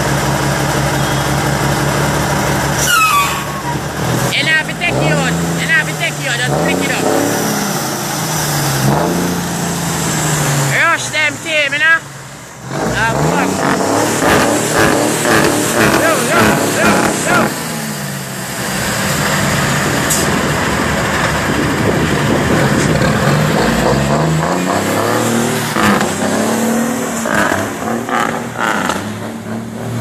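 Straight-piped Cummins L10 diesel in a Leyland truck, loud, revved again and again, its pitch climbing and falling, with a brief dip about twelve seconds in. It accelerates with climbing revs near the end.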